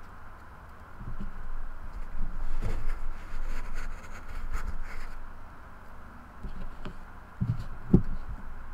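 Stacks of trading cards being lifted out of a wooden box and set down on a table: scattered light knocks and handling noise, with the loudest thump near the end.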